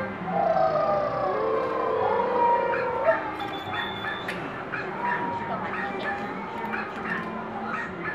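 A drawn-out, sliding voice-like call lasting about three seconds, then quieter, broken voice sounds.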